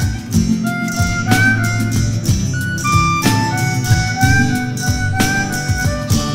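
Acoustic blues band playing an instrumental passage: a harmonica lead of held, slightly bending notes over acoustic guitar, acoustic bass and a steady programmed drum beat.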